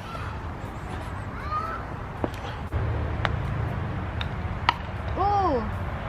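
Putter striking a golf ball on a mini-golf course: a few sharp single clicks over a low outdoor rumble. Near the end there is one short call that rises and falls.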